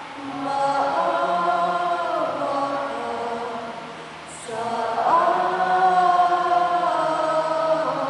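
Church choir singing a sung part of the Mass in two long phrases, with a short break about four seconds in and the second phrase louder.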